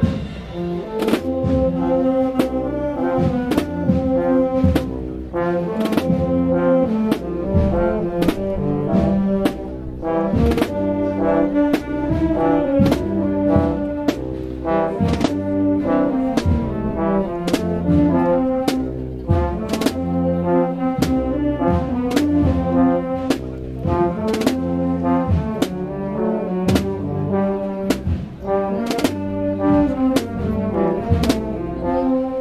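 Brass band of trombones, trumpets and euphoniums with snare and bass drums playing a tune loudly, the drums keeping a steady, even beat under the brass melody.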